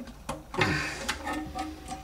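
Rubber toilet flapper being pried up off the plastic overflow pipe of the flush valve: a few short clicks, then a longer scraping rub as it comes free.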